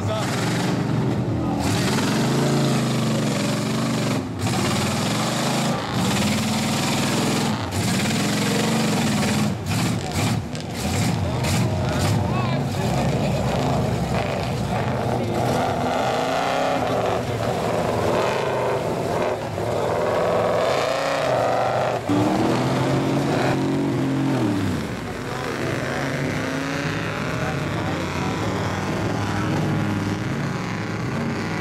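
Lifted mud-bogging pickup trucks' engines revving hard in a mud pit, the pitch rising and falling over and over as the trucks spin their tyres through the mud.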